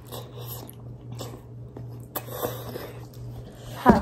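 Two people eating Buldak spicy instant noodles from cups with forks, slurping and chewing in several short, noisy bursts. Near the end comes a short voiced exclamation from one of them as the hot noodles hit the mouth.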